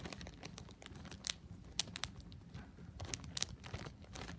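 Clear plastic zipper storage bag crinkling as it is handled at its zip closure, a run of irregular sharp crackles.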